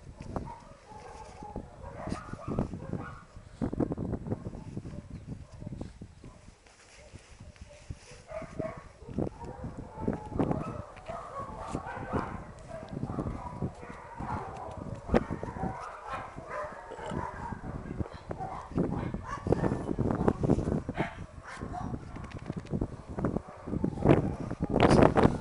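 Dogs barking on and off, with close rustling and knocking from handling.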